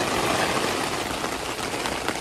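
Steady rain falling, an even hiss with fine patters.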